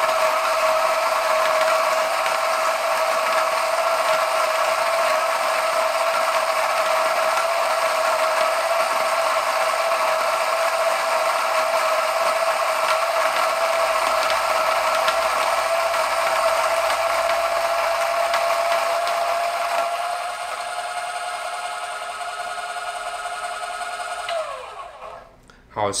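Yang-Chia 480N electric coffee grinder's titanium-coated conical burrs grinding 20 g of beans: a steady, somewhat loud and odd-sounding whine over a gritty rasp. About 20 seconds in it turns quieter and slightly higher as the beans run out and the burrs spin nearly empty. Near the end the motor is switched off and winds down with a falling whine.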